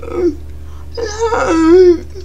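A young woman's wordless, drawn-out vocal sounds: a short one at the start, then a longer pitched one about a second in that is loudest near the end. It is the non-verbal speech of a person with athetoid cerebral palsy.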